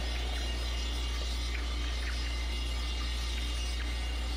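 A steady low hum, with a few faint ticks over it.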